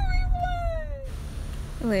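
A woman's high-pitched, drawn-out laughing squeal: one note falling slowly in pitch for about a second, cut off abruptly. A low rumble runs underneath, and a woman's speaking voice starts near the end.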